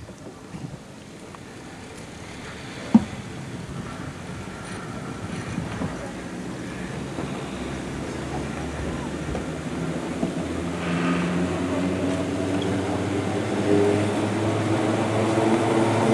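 Sky Trail gondola lift running: the cable and passing cars on the sheave wheels make a steady mechanical hum that grows louder throughout. A pitched drone builds in the last few seconds, and there is a single sharp clack about three seconds in.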